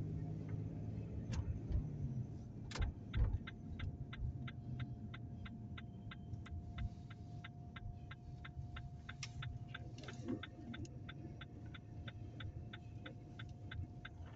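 Car's turn-signal indicator ticking steadily, about three clicks a second, starting a few seconds in, over the low rumble of the car driving on the road.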